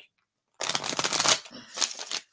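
A tarot deck being shuffled by hand: a rapid papery riffle starting about half a second in and lasting under a second, then a shorter burst near the end.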